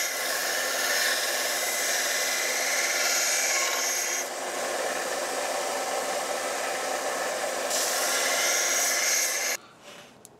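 Scheppach BD7500 belt sander running, with a hardened steel dagger blank ground against its belt: a steady grinding hiss over the motor's hum, its tone shifting twice as the contact changes. It cuts off suddenly near the end.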